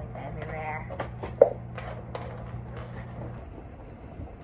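A small dog digging and pawing at a fabric cushion bed, making short scratching and rustling sounds, the loudest about a second and a half in. A brief voice-like sound comes near the start, over a steady low hum that stops about three seconds in.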